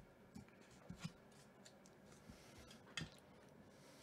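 Near silence: room tone with a few faint, brief clicks, a pair about a second in and another about three seconds in.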